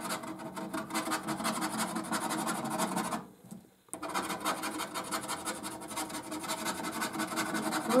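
Scratchcard latex being scratched off in quick, continuous rasping strokes. The scratching breaks off into near silence for under a second a little after three seconds in, then resumes.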